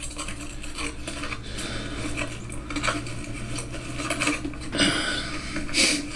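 Hands handling a small foam RC seaplane and its battery cover: irregular rustling and light plastic clattering over a steady low hum.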